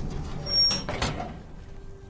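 A heavy ground hatch being hauled open: a short scrape about half a second in, then a sharp knock at about one second.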